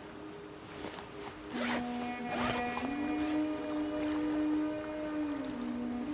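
Dramatic background film score of long held low notes. The music steps up in pitch about three seconds in and back down near the end, and it gets louder about one and a half seconds in, where several short rushing swells come in.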